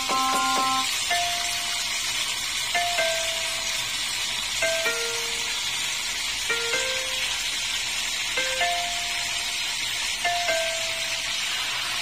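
Milkfish frying in hot oil in a pan, a steady sizzle, under slow background music of short notes, a pair about every two seconds.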